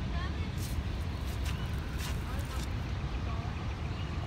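Steady low outdoor rumble, with a few faint, brief voice-like sounds over it.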